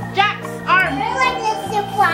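Young children's voices chattering and exclaiming excitedly, over background music with steady low notes that change about every second.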